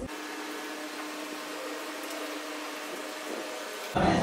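Steady room hiss with a faint, even hum and no voices. It starts and stops abruptly.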